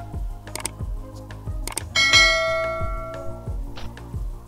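Subscribe-button animation sound effect: a couple of sharp clicks, then a bell ringing about halfway through and fading out over a second and a half. Background music with a steady beat plays under it.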